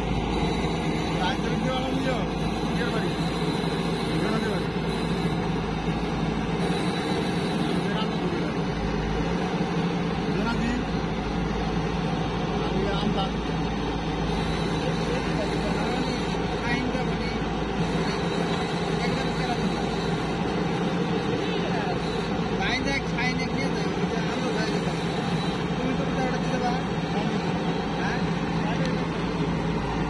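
Diesel engine of a JCB 3DX backhoe loader running steadily as the machine drives through mud with its front bucket down.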